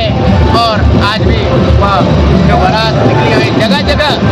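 Loud DJ music played over a procession sound system: a heavy, repeating bass beat under a sung, wavering vocal line.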